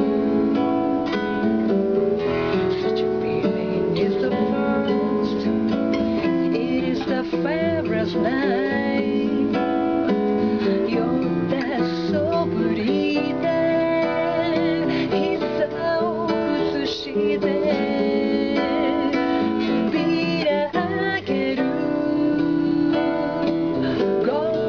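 A woman singing a bossa nova song, accompanying herself on a classical guitar with strummed chords.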